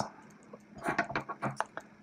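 Handling noise at a fly-tying vise: a quick run of light clicks and ticks about a second in, over a faint steady hum.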